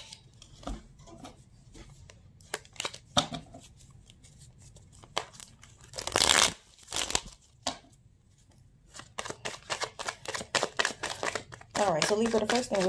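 A deck of tarot cards being handled and shuffled. There are scattered clicks and a brief rustle about six seconds in, then a fast run of card-flicking clicks over the last three seconds as the deck is shuffled.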